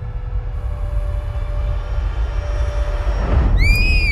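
Dark trailer score: a low rumbling drone with a faint held tone. Near the end a shrill screech rises and falls over about half a second.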